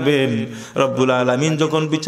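A man's voice intoning a Bengali waz sermon in a drawn-out, sing-song chant. He holds a note that slides down in pitch, breaks off briefly, then holds a second, level note.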